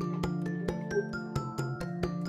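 Background film music: a melody of quick, evenly spaced struck notes, about five a second, over steady held low notes.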